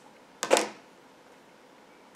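Scissors snipping through a strand of yarn once: a single short cut about half a second in.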